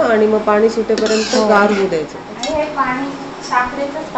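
A woman talking, with a metal ladle clinking and scraping against a large metal kadai of cooked chana dal.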